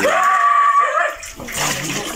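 Water splashing and churning as a packed mass of eel-like fish thrashes in shallow water, with a drawn-out vocal sound over the first second.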